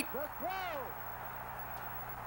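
A faint voice with a few short rising-and-falling calls in the first second, then a steady low hum and tape hiss.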